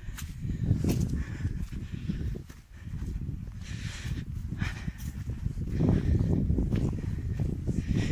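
Footsteps walking over wet, grassy hillside ground, with an irregular low rumble of noise on the microphone.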